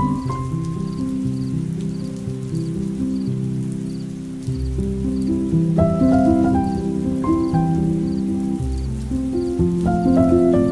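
Slow, calm lofi piano music with held low bass notes, laid over a steady rain-like patter, with a faint light tick keeping an even beat.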